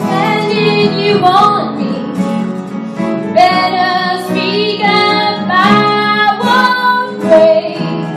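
Live song: a woman singing at a microphone, accompanied by acoustic guitar and piano.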